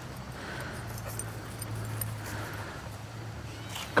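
A dog whining faintly over a low steady hum that fades out about two-thirds of the way through.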